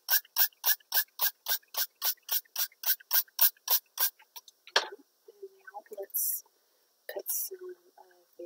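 A handheld spray bottle of rubbing alcohol pumped in quick repeated spritzes, about three or four a second, misting the inked plastic wrap. The pumping stops about four seconds in, followed by a few scattered quieter sounds.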